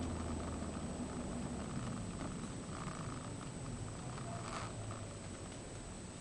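Toyota MR2 Turbo's turbocharged four-cylinder engine running at low revs, heard inside the cabin as a steady low hum that fades slightly.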